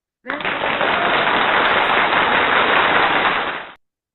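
Loud burst of applause as a congratulation sound effect. It starts abruptly about a third of a second in and cuts off sharply just before the end.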